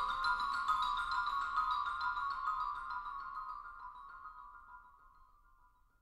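Mallet percussion playing a dense patter of fast repeated high notes in a narrow pitch band, thinning out and fading to near silence over about five seconds.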